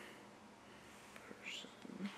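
Faint rustling of a large book's heavy pages being handled and turned, with a brief soft hiss about one and a half seconds in.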